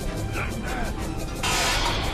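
Film soundtrack of an aircraft's propeller engines running with a fast, even chopping pulse, with short grunts from men fighting. A loud rush of noise comes in near the end.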